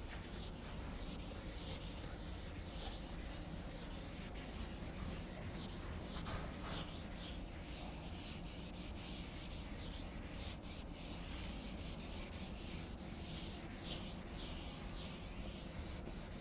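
Blackboard duster rubbing chalk off a chalkboard in quick, repeated back-and-forth strokes, each a short scratchy hiss.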